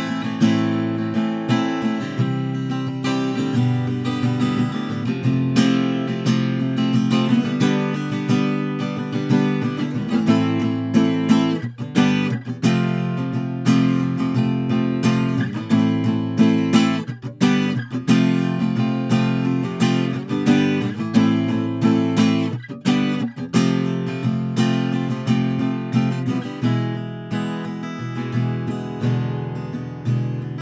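Yamaha APX6C steel-string acoustic guitar strummed in chords, picked up by a Tonor Q9 USB condenser microphone in front of the body.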